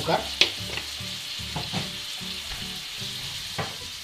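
Diced tomato, garlic and bay leaves frying in oil in a frying pan, a steady sizzle, with a few short clicks of a wooden spatula in the pan.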